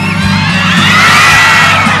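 Large crowd cheering and shouting, many voices at once, swelling to a peak about a second in. Music with a steady beat plays underneath.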